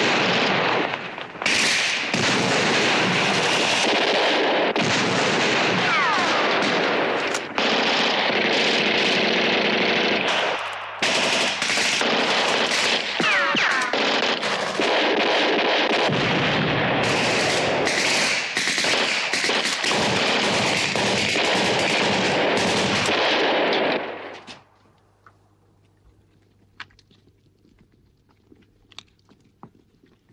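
Sustained automatic gunfire in a film battle scene: a dense, unbroken barrage of rapid shots that cuts off about 24 seconds in. Only a few faint isolated clicks follow.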